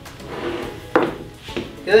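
A sharp click about a second in as the trimmer's plastic auxiliary handle is moved on its metal shaft, with lighter handling rubs around it.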